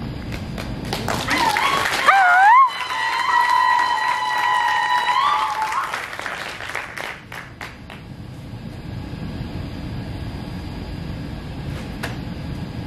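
Audience clapping, with a shrill, high-pitched call rising over it about a second in that wavers up and down and then holds one note for about three seconds; the clapping thins out after about six seconds.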